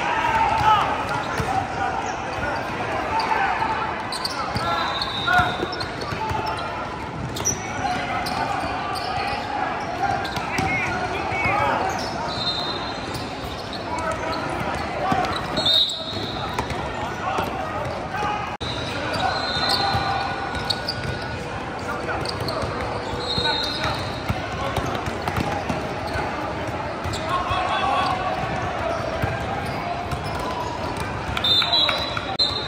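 A basketball game on a hardwood court in a large, echoing gym: a ball being dribbled, shoes squeaking in short high chirps, and players and spectators calling out.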